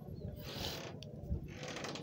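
Faint background noise with a soft hiss about half a second in and a single short click about a second in.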